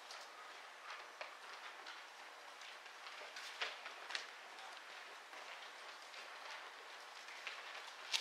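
Faint rustling of thin Bible pages being turned while a passage is looked up, with a few sharper page flicks about three and a half and four seconds in.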